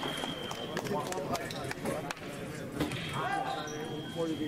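Steady high-pitched electronic tone of a fencing scoring machine signalling a touch, sounding until about a second in and again from about three seconds in, over voices in the hall and scattered sharp clicks.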